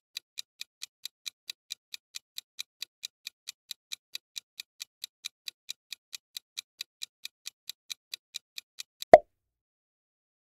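Clock-ticking countdown sound effect, about four to five ticks a second, that stops about nine seconds in with one loud pop as the timer runs out.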